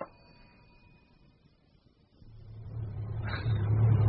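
Near silence, then about two seconds in a car engine fades in and grows steadily louder, running with a low, even hum as the car drives.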